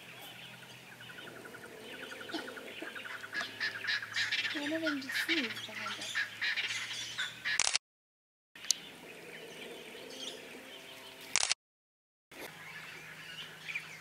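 Outdoor ambience of wild birds calling: a rapid trill in the first few seconds, scattered chirps, and a couple of low sliding calls about five seconds in. Twice the sound cuts to dead silence for under a second, each time just after a sharp click.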